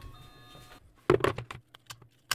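AA batteries clicking and clattering as they are handled and pushed into a plastic four-cell battery holder, in a cluster of sharp clicks starting about halfway through.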